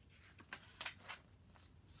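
Faint rustle and crackle of a picture book's page being turned, a few short paper sounds about halfway through.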